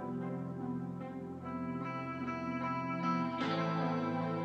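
A future bass track in progress playing back through studio monitors: held chords, with a plucked pattern of notes coming in about a second and a half in and the chord changing shortly before the end.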